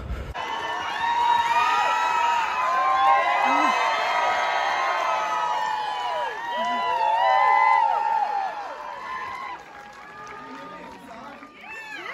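Audience in a cinema cheering and screaming with many voices at once, welcoming someone walking in; the cheers die down about nine and a half seconds in.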